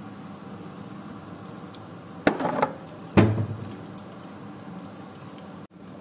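Two knocks of kitchenware, each ringing briefly, a little under a second apart, over a steady low hiss.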